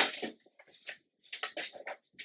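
Paper rustling as a stack of old paper pages is handled and folded over by hand: a sharp rustle at the start, then several softer ones.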